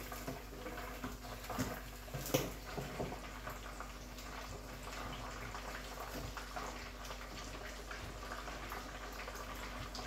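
Pot of ogbono soup simmering on the hob: a faint, steady bubbling with small pops and crackles, and a light knock about two and a half seconds in.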